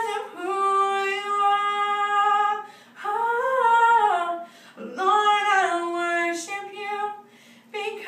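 A woman singing a cappella, holding long sustained notes with no clear words, one note swelling up and falling away in the middle, with short breaths between phrases.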